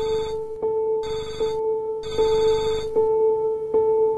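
A trilling bell rings in three bursts, the last stopping about three seconds in. Under it runs music: a single low note plucked again about every 0.8 seconds.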